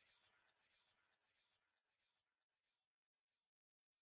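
Near silence: a very faint hiss that fades away to nothing.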